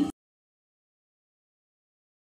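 Dead silence: the sound track is muted, cutting off the end of a woman's voice right at the start; the water being poured is not heard.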